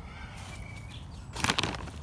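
Rustling and crinkling of a plastic fertiliser bag being handled. A short burst of crackles starts about one and a half seconds in, after a quiet start.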